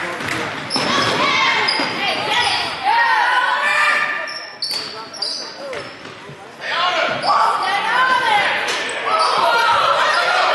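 Indoor basketball game sounds in an echoing gym: the ball bouncing and sneakers squeaking sharply on the hardwood floor, with several voices calling out across the court.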